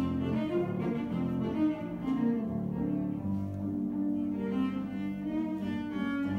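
Cello played with the bow in a classical piece: a continuous line of sustained notes, each held about a second, over lower notes.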